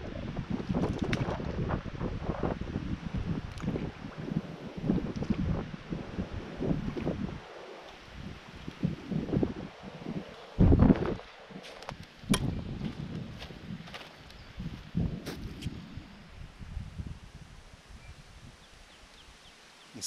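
Strong wind buffeting the microphone in uneven gusts, with a few brief clicks. The strongest gust comes about ten seconds in.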